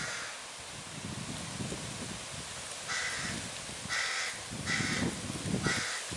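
A crow cawing in short raspy calls, about once a second from about three seconds in. Underneath, a German Shepherd is gnawing and chewing a raw, semi-frozen ostrich neck.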